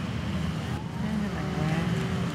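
A steady low rumble of outdoor background noise, with soft gliding music tones fading in about a second in.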